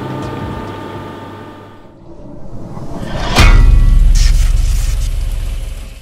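Logo-sting sound effect: a rising whoosh builds into a deep boom about three and a half seconds in, which holds and then fades away near the end. Before it, a steady background hum fades out over the first two seconds.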